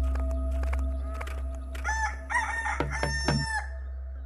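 A rooster crowing once, in a few linked parts, starting about two seconds in and lasting under two seconds. Underneath runs a steady low drone with a few held tones.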